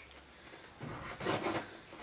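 Cardboard shipping box being handled and opened: a few short rustles and scrapes starting about a second in.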